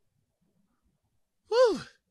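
A short sigh-like vocal sound from one of the speakers about one and a half seconds in: breathy, its pitch rising briefly and then dropping away.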